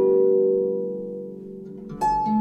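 Stoney End double-strung Lorraine harp tuned to A=432 Hz: a chord of several plucked strings rings on and slowly dies away, with no new notes until a fresh pluck right at the end.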